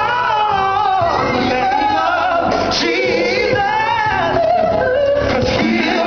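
Male gospel vocal group singing live into handheld microphones, a lead voice gliding through long held notes and runs.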